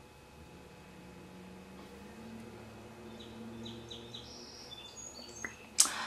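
Faint birds chirping outside, a run of short high notes in the second half. A single sharp click near the end.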